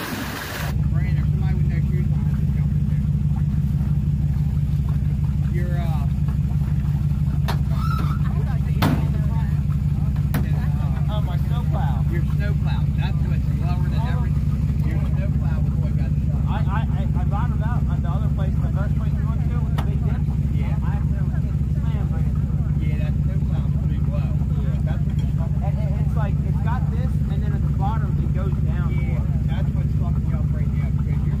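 Dodge Ram 1500 pickup's V8 engine running at steady revs with the truck stuck in a mud hole. Faint voices in the background.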